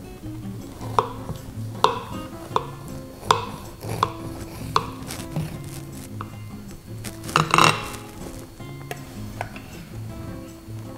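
Serrated knife cutting through a baked pie crust on a glass cake stand: a series of sharp clicks, one about every three-quarters of a second, then a louder scrape near the end as a pie server slides under a slice. Soft background music plays underneath.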